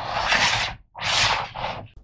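A hard plastic caliper case sliding and being turned over on a cutting mat: two scraping noises, each under a second long, with a short one after.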